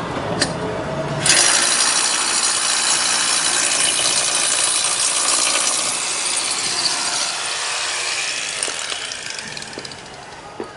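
A power tool working on fibre roof sheeting, a loud harsh hiss that starts suddenly about a second in and fades away over the last few seconds.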